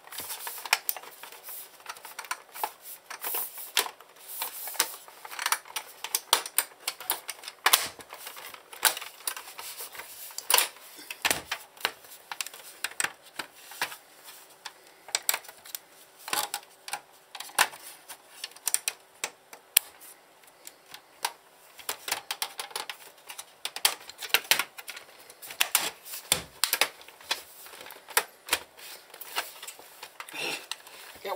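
Irregular plastic clicks and clacks of a Sky+ HD receiver's plastic outer cover being handled and pressed onto its clip tabs, with several sharper knocks among them.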